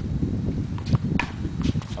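A paddle tennis paddle striking the ball: two sharp knocks close together about a second in, over a low rumble of movement on the court.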